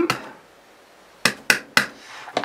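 A small ink pad tapped onto a clear stamp on an acrylic stamp-press platform: one click at the start, then three sharp plastic clacks about a quarter second apart in the second half.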